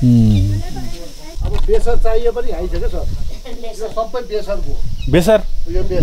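Speech: men talking, with a low steady rumble underneath from about a second and a half in.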